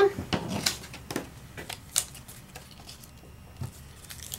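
Light taps and paper rustling as sticky notes are pressed down by hand to hold a stencil on a card on a tabletop: a few scattered soft taps, the clearest about two seconds in.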